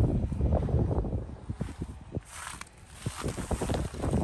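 Carrier heat pump outdoor unit running, its fan giving a low steady rumble that is mixed with wind on the microphone, along with light crunching steps on pine straw and a brief hiss about halfway through.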